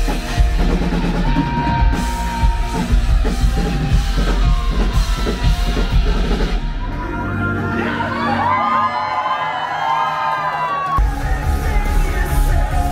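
Live rock band playing loud in a small club: drums, bass and electric guitar, with yells from the crowd. From about eight seconds in the drums and bass drop away for about three seconds, leaving the higher guitar and voice parts, then the full band comes back in near the end.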